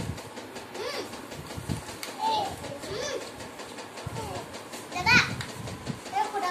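Young children's voices chattering and calling out to each other. About five seconds in comes one louder, high-pitched cry.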